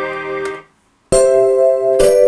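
Roland JD-800 digital synthesizer playing chords. A held chord fades away about half a second in. After a brief silence, a new bright chord is struck with a sharp attack and strong, ringing high overtones, and it holds.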